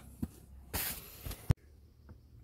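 Squats (tiny maggots) pouring from a hand into a plastic bait tub: a faint rustling trickle that rises to a brief hiss-like pour about three-quarters of a second in. A single sharp click follows about a second and a half in.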